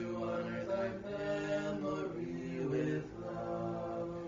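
Unaccompanied Orthodox vespers chant, sung in slow, long-held notes that step from pitch to pitch.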